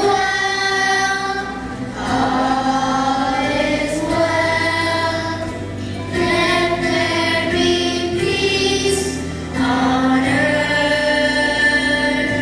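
Children singing a Christmas song, led by a child angel singing into a handheld microphone, in long held notes in phrases of about two seconds.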